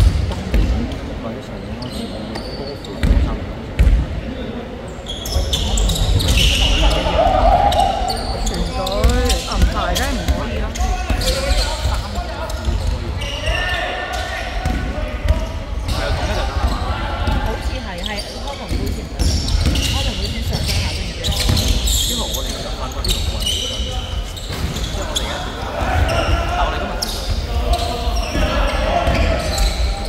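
Basketball bouncing on a hardwood gym floor, with a few sharp knocks a few seconds in as the free-throw shooter dribbles, then players' and bench voices calling out.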